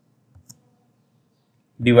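Two faint computer keyboard keystrokes about half a second in, typing a closing bracket and a division sign into a spreadsheet formula, then a man's voice starting to speak near the end.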